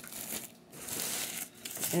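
Clear plastic packaging crinkling as it is handled, in two stretches with a short pause about a quarter of the way in.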